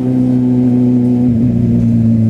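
Kawasaki Z800's inline-four engine running at steady cruising revs while riding, its note dipping a little about halfway through as the throttle eases.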